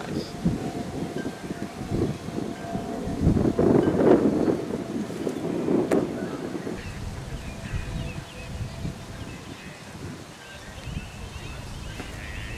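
Wind buffeting the microphone in gusts, with one sharp pop about six seconds in: a pitched baseball smacking into the catcher's mitt.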